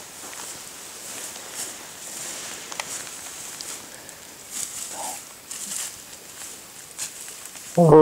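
Moose walking through dry leaf litter and brush, a steady run of soft rustling and crunching steps. Near the end a man's voice breaks in with a loud "oh".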